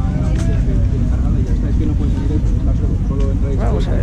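A steady low rumble with faint voices talking in the background.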